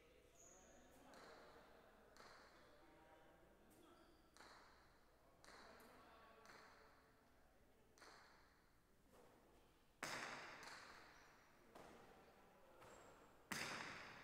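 Jai alai pelota hitting the court walls and floor during a rally: a string of sharp, echoing hits a second or two apart, the two loudest in the last four seconds.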